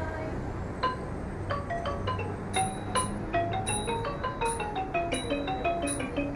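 Traditional Thai music played on a ranat, the Thai xylophone: quick, continuous runs of mallet-struck notes, each ringing briefly.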